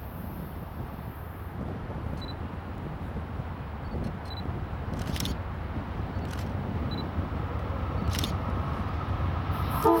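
Amtrak P42 diesel locomotive approaching at the head of a passenger train, its engine rumble growing steadily louder. A few short sharp clicks come around the middle, and the locomotive's horn starts sounding just at the end.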